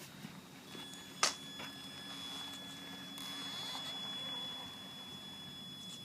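Traxxas Summit RC crawler's electric motor and gear drive running slowly, with a steady high-pitched whine. A single sharp knock comes about a second in.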